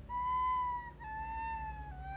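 Soprano recorder playing Mi, Re, Do (B, A, G) as three descending held notes of about a second each. The notes are run together without tonguing, the sloppy sound of notes not started with a 't'. The third note begins near the end.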